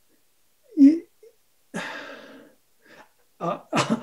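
A man's long, breathy vocal exhale that fades as it goes, between two short spoken words.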